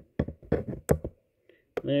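A series of short plastic clicks and taps as the test button on an auto-darkening welding helmet's filter is pressed and the helmet is handled. The sharpest click comes a little under a second in.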